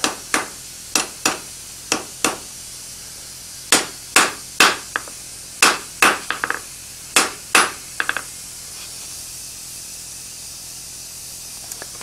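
Cross-peen hand hammer striking a red-hot S7 tool-steel chisel blank on an anvil, about sixteen sharp blows in uneven pairs and small clusters over the first eight seconds, some followed by quick light taps. The blows reshape the working end of a scale chisel, closing it up and pushing it over.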